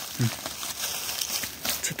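Dry, finely chopped corn stalks rustling and crackling as a hand grabs and lifts a handful of them. A brief vocal sound comes about a quarter second in, and speech starts near the end.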